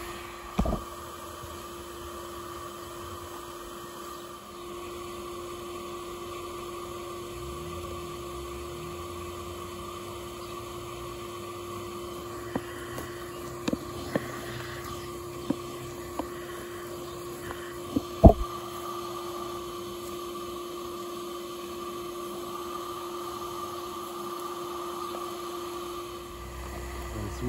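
Bee vacuum extraction rig running steadily at a bumblebee nest entrance: a constant hum with a higher steady whine, drawing bees through the hose into a plastic collection bottle. A few sharp knocks from the hose and bottle being handled, the loudest about 18 seconds in.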